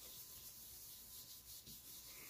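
Very faint rubbing of an ink blending brush worked back and forth over cardstock.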